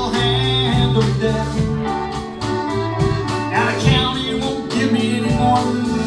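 Live country-rock band playing a song: guitars, bass, drums and keyboard, with a steady drumbeat.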